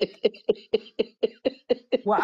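A person's voice making a quick, even run of short bursts, about four or five a second, ending as talking resumes.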